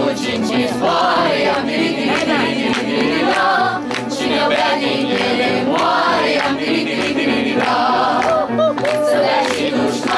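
Mixed choir of women's and men's voices singing a Romanian folk song, loud and unbroken.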